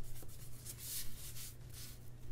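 Fingertips rubbing over paper, smoothing a paper box sticker down onto a planner page: a few soft brushing strokes, the longest about halfway through and a shorter one near the end.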